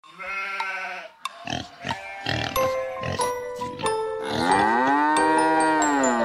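Children's-song intro music with cartoon farm-animal calls: a short call right at the start, then one long call that rises and falls about four seconds in.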